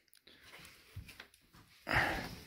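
Carpeted plywood floor panel being lifted out of an aluminium jon boat: a few faint knocks, then a louder scraping rustle near the end as the panel moves.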